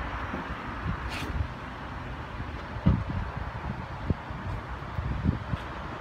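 Wind buffeting a handheld phone microphone, a low rumble, with a brief rustle about a second in and a few soft low thumps about three, four and five seconds in.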